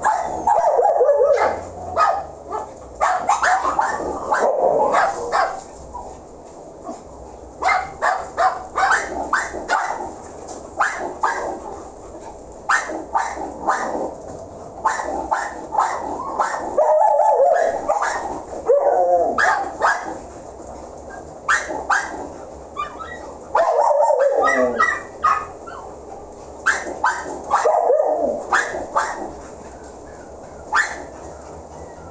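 Dogs barking in quick runs of several barks, starting again every few seconds throughout, with a few drawn-out whining calls between the runs.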